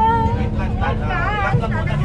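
A person talking over a steady low rumble of a running vehicle.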